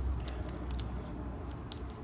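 Faint crinkling and crackling of an adhesion-promoter sponge packet's wrapper, handled between the fingers to push the sponge out, in several short irregular crackles over a low steady hum.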